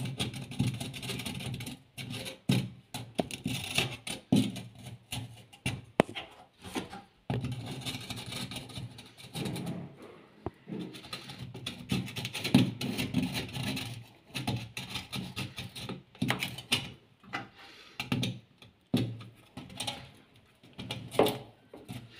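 Pointed metal tool scraping and scratching in short irregular strokes at the mesh filter of a washing machine's water inlet, clearing the clog that keeps the machine from filling with water.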